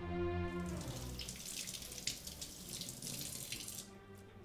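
Water from a kitchen faucet running and splashing into a sink for about three seconds, stopping just before the end. Orchestral music fades out in the first second.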